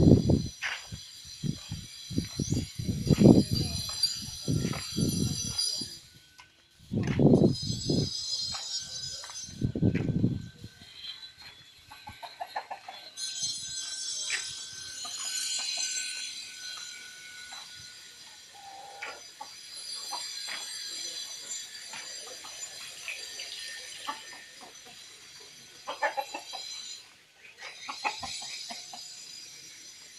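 Chickens clucking now and then over a high, steady, shrill buzz that cuts out briefly twice. Loud low buffeting hits the microphone through the first ten seconds or so.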